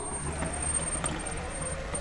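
A robot lawnmower running close by and a small solar-powered K'nex buggy's electric motors and plastic gears working together: a steady low hum under a thin high whine, with light irregular rattling.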